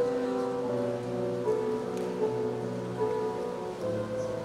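Grand piano playing an instrumental passage of a song accompaniment without singing: held notes and chords that change every half second to a second.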